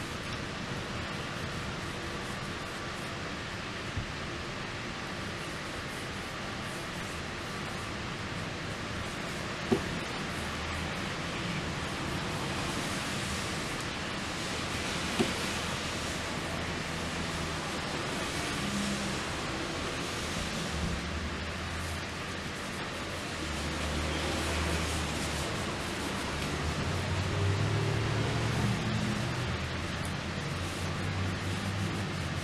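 Steady hiss of rain falling, with two sharp clicks about ten and fifteen seconds in and some low rumbling in the second half.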